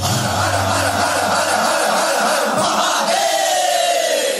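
Break in the dance song: a massed chorus of voices holds a loud shout-like cry while the bass and beat drop out, then a single long note glides downward near the end.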